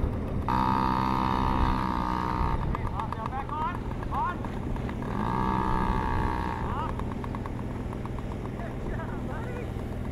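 Small two-stroke engine of a Yamaha PW-series youth dirt bike running low, then twice rising to a steady higher note: once for about two seconds, and again for about a second and a half a few seconds later.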